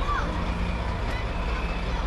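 Diesel lorry engine running steadily under a moving parade float, a low rumble with crowd voices over it.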